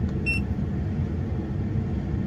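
A short electronic beep from the Autophix 7150 OBD2 scanner's keypad about a quarter second in, over a steady low rumble in the truck cab.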